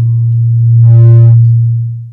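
A loud, steady low electrical hum through the sound system, with fainter higher tones over it around the middle, cutting off suddenly near the end.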